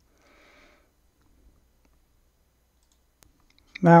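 Near-silent room tone with a faint short hiss about half a second in, then a couple of faint clicks of a computer mouse, the sharper one about three seconds in. A man's voice starts just before the end.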